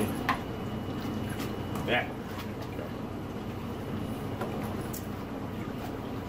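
Aquarium water churning and lapping under strong circulation-pump flow in surge mode, with a low steady hum beneath it. A few short clicks and small splashes near the start as a plastic egg crate rack is handled in the water.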